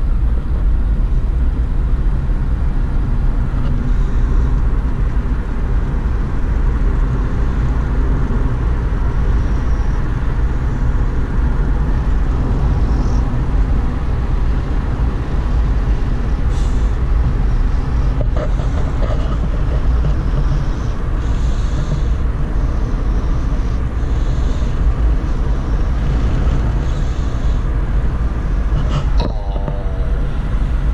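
Steady road and engine rumble inside a moving car's cabin, loud and unchanging throughout.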